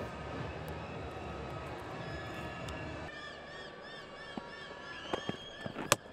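Cricket ground ambience between deliveries: a steady low crowd noise that drops a little about halfway, with a faint repeating high chirp over it from then on, and a sharp knock just before the end.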